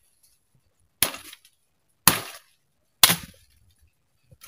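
Three chopping blows of a hand blade into a tree branch, about one a second, each a sharp crack with a short fading tail.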